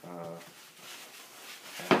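Plastic wrapping rustling as a long DRO scale is pulled out of its bag, then a sharp knock near the end.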